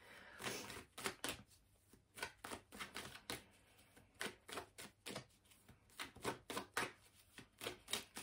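Tarot cards being shuffled by hand: a quiet, irregular run of quick card clicks and slaps.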